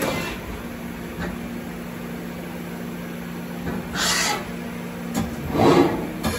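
Mori Seiki ZT1500Y CNC turning centre running, a steady low hum from its drives while the tool turret traverses and indexes. Short hissing rushes come about four seconds in and again near the end.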